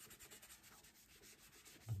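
Faint, quick rubbing strokes of a small pad spreading paste wax over a smooth-sanded wooden surface.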